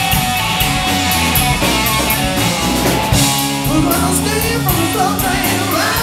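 Live blues band playing loud and amplified: electric guitars over a steady bass line, with a drum kit keeping time on cymbals.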